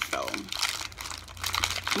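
Snack packaging crinkling as it is handled, in irregular crackles after a short spoken word.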